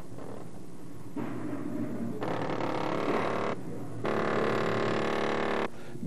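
A handheld power tool's motor buzzing in two bursts of about a second and a half each, with a short break between them.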